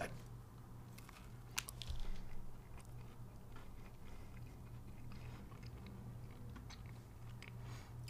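Faint chewing of a mouthful of Oreo ice cream sandwich, with a few short mouth clicks bunched about one and a half to two seconds in, over a steady low hum.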